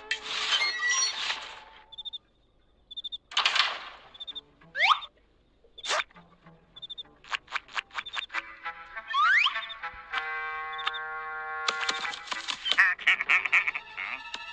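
Cartoon sound effects and music: short high chirps, whooshes and quick rising glides, then a run of clicks and a held musical chord about ten seconds in, followed by a busy flurry of effects near the end.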